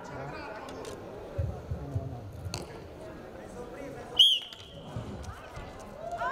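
A referee's whistle blows once, short and sharp, about four seconds in, restarting the wrestling bout. Before it come a few scattered knocks and thuds.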